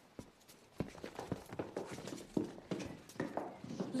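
Footsteps of several people walking, a run of irregular, overlapping steps.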